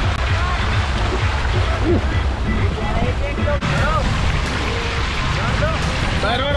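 Rushing water and wind noise as an inflatable raft tube carrying several riders sets off down a water slide, with voices over it.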